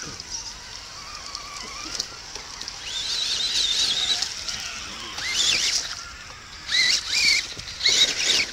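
Radio-controlled scale crawler trucks' electric motors and drivetrains whining in short bursts as they are throttled through mud, the pitch wavering with the throttle. The bursts come about three seconds in, then around five seconds, and twice near the end.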